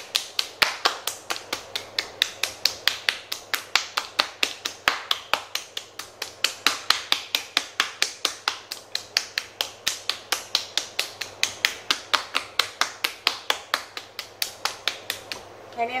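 Hands slapping a 5.5-pound lump of soft clay on a potter's wheel head to slap-center it: an even run of sharp slaps, several a second, that stops near the end.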